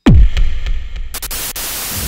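Electronic logo sting: a sudden deep hit that sweeps quickly downward in pitch, then crackling static and a burst of bright hiss.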